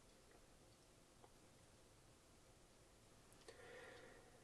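Near silence: room tone, with one faint click about a second in and a faint brief rustle near the end, the small sounds of gloved hands handling a diecast model car.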